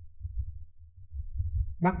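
Low, uneven rumble of air buffeting the microphone, with a man's voice starting to speak near the end.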